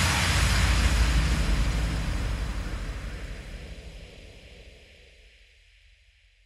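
The closing sound effect of a dubstep track, left after a final hit: a rushing noise wash over a deep bass rumble, dying away over about five seconds.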